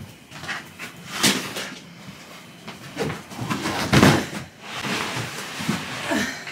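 Plastic storage tote being handled: a run of knocks, bumps and rustles, the loudest about four seconds in, as the tub and its snap-on lid are moved and opened.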